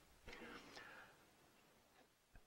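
Near silence in a classroom, with a brief faint murmured voice about a quarter second in that lasts under a second.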